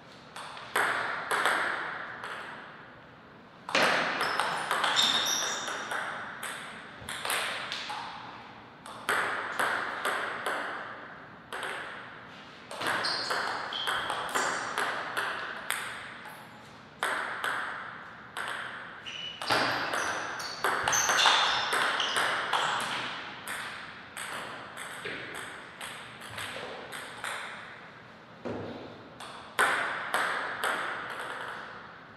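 Table tennis rallies: the celluloid-type ball clicking sharply off rackets and the table in quick alternating strokes. The clicks come in runs of a few seconds, one per point, with short pauses between points.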